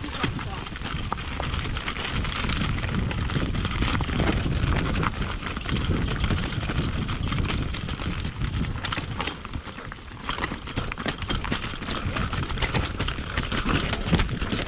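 Mountain bike riding fast down a rocky, loose dirt trail, heard from on the bike: tyres crunching over stones and the bike rattling and knocking over the rough ground, with wind buffeting the camera's microphone.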